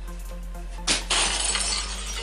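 A sharp crash about a second in, followed by about a second of shattering glass, over steady background music.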